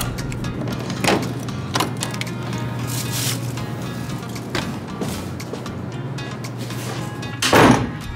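Background music with a steady low note, over a few short clicks and knocks from a hotel room door being unlocked with a key card and opened, and a louder thump near the end.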